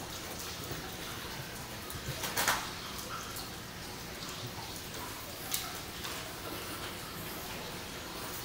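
Quiet outdoor background with faint bird calls. A brief sharp sound comes about two and a half seconds in, and a smaller one later.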